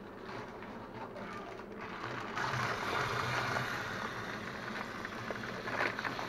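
Plastic bag of rice rustling and crinkling as it is handled over the barrel, louder from about two seconds in.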